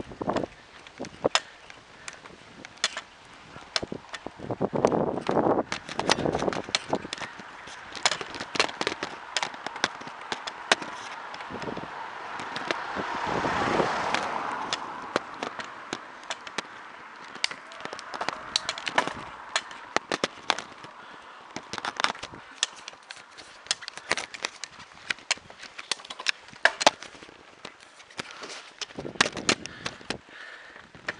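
Bicycle riding uphill, heard from the moving bike: irregular rattles and clicks from the bike and camera over the road surface. A rush of noise swells and fades about halfway through.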